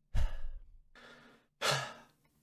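A person sighing into a close microphone: three breaths, a loud one, a softer one, then another loud one.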